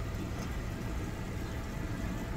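A steady, even low hum or rumble of background noise, with no distinct events.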